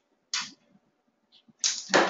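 A single sharp click at the computer as the keycode entry is confirmed and the exam download starts, followed near the end by a short breathy rush of noise.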